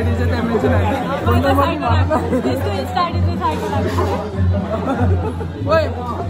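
Several people chatting over loud background music with a heavy bass that pulses on and off, in a large hall.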